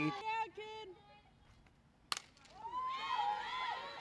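Faint voices calling out, a short near-silent gap, then a single sharp crack about halfway through, followed by more faint voices calling.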